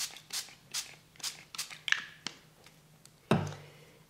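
Small pump spray bottle spritzing mist onto paper again and again, about two to three quick sprays a second, stopping a little past two seconds in. A single thump follows near the end.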